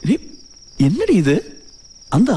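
A cricket trilling steadily and unbroken in the background, with a man's voice breaking in briefly twice, its pitch swooping up and down.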